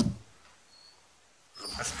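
A man's speaking voice: a word trails off with a sharp drop in pitch, about a second of quiet room tone follows, and he starts talking again near the end.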